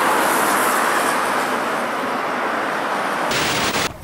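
Steady rushing noise of road traffic driving past close by. It changes abruptly shortly before the end.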